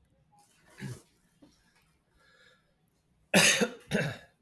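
A person coughing: a soft cough about a second in, then two loud coughs close together near the end.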